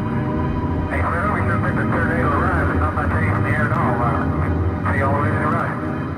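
Beatless breakdown of a techno track: a sustained low drone with a warbling, voice-like synth or processed vocal sample wavering over it.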